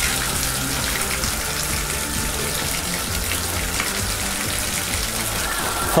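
Bathtub tap running, water pouring steadily onto the bottom of a nearly empty tub.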